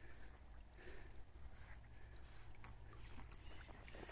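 Near silence: faint outdoor background with a steady low rumble and a few faint ticks.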